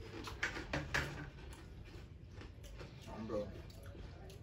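Cereal being eaten: a few short clicks and crunches in the first second, then a brief voiced hum of a person tasting a little after three seconds in.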